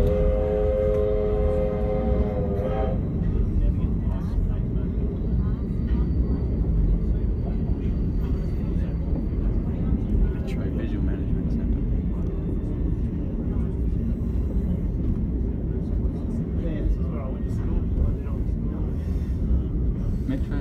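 A locomotive whistle sounding a steady chord of several tones, cutting off about three seconds in, over the steady low rumble of the train rolling along the track.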